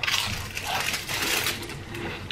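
Plastic wrapper of a packet of saltine crackers being torn open and crinkled close to the microphone, a dense crackling that dies away near the end.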